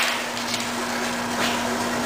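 Steady hiss of compressed air at the hose coupling and gauge fitting of a two-stroke expansion chamber being pressurised to push out its dents, over a constant low hum.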